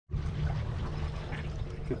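Water trickling and lapping against the hull of an aluminum jon boat moving slowly, over a steady low rumble and a faint steady hum.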